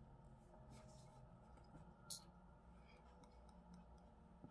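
Near silence, broken about halfway through by one short hiss: a perfume atomizer spraying once.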